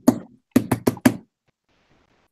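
A quick run of sharp knocks, about five in well under a second, after a single knock at the start.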